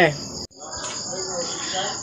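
Crickets trilling steadily in the background, a continuous high-pitched sound under a pause in speech.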